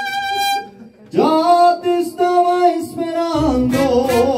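Live mariachi band playing the closing bars of a romantic ballad. A held note with vibrato ends under a second in, then after a brief gap the ensemble sounds a sustained chord. Near the end deep bass and strummed guitars come in under wavering violin lines.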